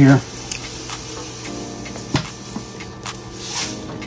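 Granulated sugar poured from a paper bag into a plastic pitcher: a soft, hissing trickle of granules that swells near the end, with a few light knocks of the bag and pitcher.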